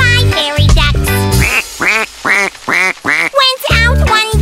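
Cartoon duck quacks, about five in a row roughly half a second apart, over upbeat children's music.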